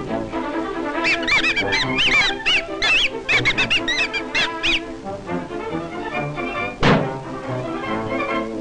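Old cartoon soundtrack music, with a fast run of short, arching squeaky whistle notes from about one to five seconds in, and a single thunk near the end.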